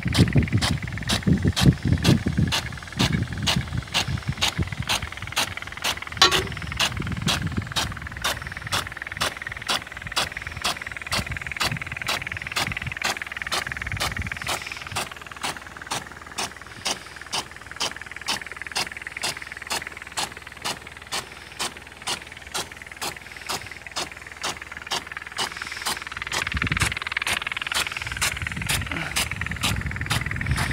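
Big-gun sprinkler on an Irtec hose-reel irrigator, its swing arm ticking against the water jet in a steady rhythm, somewhat more than one sharp tick a second, over the hiss of the spray. A low rumble comes in over the first few seconds and again near the end.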